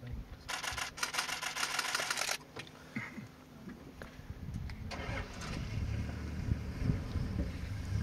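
A rapid rattling run of evenly spaced clicks lasting about two seconds near the start. From about five seconds in, a motor vehicle's engine starts and runs steadily at idle with a low rumble.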